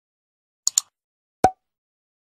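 Logo intro sound effect over digital silence: two quick, high clicks, then a single pop about two-thirds of a second later.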